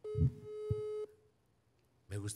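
Telephone ringback tone heard through a phone's speaker: one steady electronic beep about a second long, the outgoing call ringing and not yet answered. A low thump or two sounds under the start of the beep.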